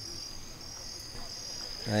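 Insects trilling in a steady, high-pitched chorus.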